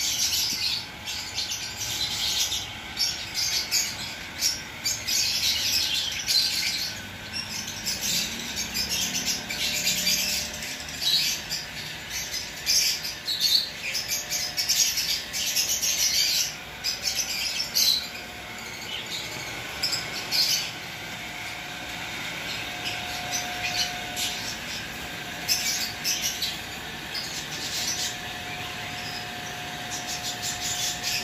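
Many small aviary birds chirping continuously, a dense overlapping chatter that thins out in the last third, where a faint steady tone comes and goes.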